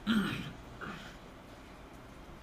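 A man clearing his throat once, briefly, at the start.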